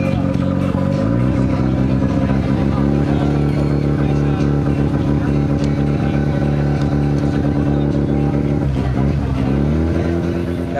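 Car engine revving up about a second in, climbing again shortly after, held at steady high revs, then dropping back near the end.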